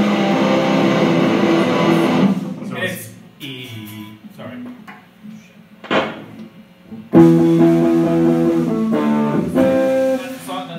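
Electric guitars playing loud amplified chords that stop about two seconds in. After a few quieter seconds with light picking and a sharp click, the chords come in loud again about seven seconds in and break off near the end.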